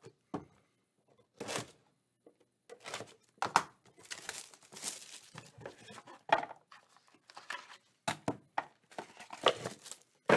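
Clear plastic wrapping torn and crinkled off a small cardboard trading-card box, in irregular spurts of rustling mixed with light clicks and knocks of the box being handled. The rustling is busiest in the middle.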